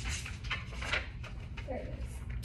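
Light rustling and small clicks of crayons and markers being handled and pushed around on a table while searching for a crayon.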